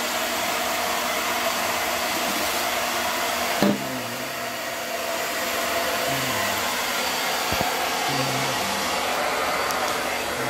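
Steady, fairly loud whooshing noise of a fan or blower, with a single knock about three and a half seconds in.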